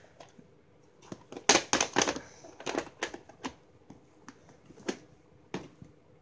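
A plastic VHS cassette and its plastic clamshell case being handled: a run of sharp clicks and knocks, loudest and closest together about one and a half to two seconds in, then scattered clicks.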